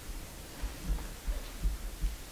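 Low, irregular thumps picked up by a handheld microphone held close to the mouth, several in two seconds, over a faint steady room hum.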